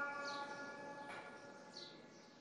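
The echo of the muezzin's sung call to prayer fading out across the mosque's loudspeaker system after the phrase ends. Faint short bird chirps twice over a quiet background.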